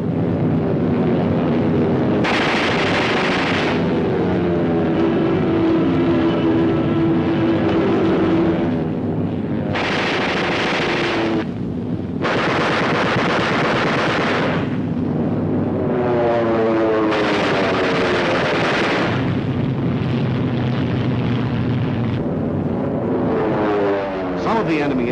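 Old film soundtrack of propeller warplane engines, their pitch falling and rising as the aircraft dive past, broken by four long bursts of machine-gun fire during an air battle.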